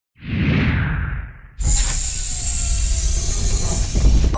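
Intro sound effects: a whoosh swells and fades, then about a second and a half in a sudden loud, hissy hit with a deep rumble starts and carries on.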